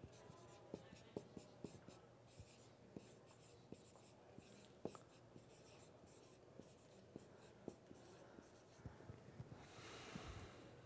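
Faint sound of a dry-erase marker writing on a whiteboard: irregular short taps and strokes as letters are written.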